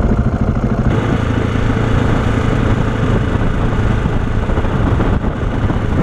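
KTM 690's single-cylinder engine running as the motorcycle rides a dirt road, under steady wind and road noise. The rush grows louder about a second in.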